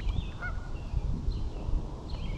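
Low rumble of wind on the microphone over the lake, with a few faint, short high-pitched calls in the first half-second or so.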